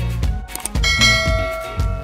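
A bell-like chime rings out about a second in and fades slowly, over upbeat funky background music.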